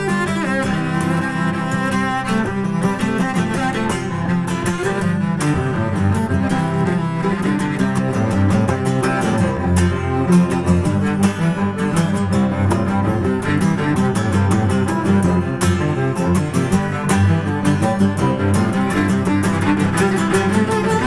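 Instrumental folk music led by cello, with plucked strings underneath and no singing.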